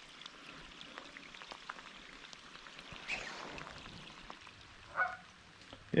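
Light rain falling on lake water: a faint, steady patter of many small raindrops.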